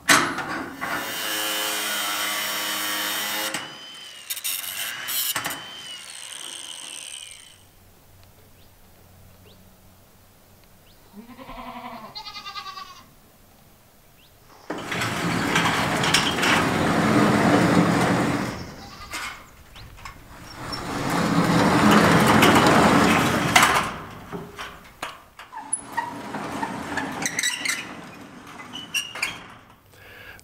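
A corrugated sheet-metal barn door rolling on pulley-wheel rollers along an aluminum angle track, in two passes of about three seconds each in the second half. Before that, a goat bleats once with a wavering call, and metal hardware clanks near the start.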